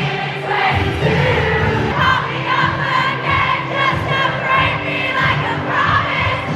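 A stadium crowd singing along in unison to live pop music over a big sound system, with a steady beat underneath, as heard from in the stands.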